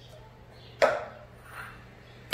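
Mesh sieve knocked once against a stainless mixing bowl while sifting flour: a single sharp clink with a brief ring, a little under a second in.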